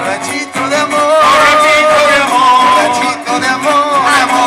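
Live band music with a woman singing into a handheld microphone, her sung notes held and gliding over the accompaniment.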